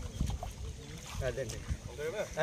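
Water sloshing and low thumps as people shift and step in a flooded rice nursery bed, with a short snatch of voice just past the middle.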